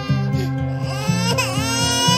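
A baby crying in one long, drawn-out wail that dips sharply in pitch and recovers about one and a half seconds in, over background music with a steady pulsing bass beat.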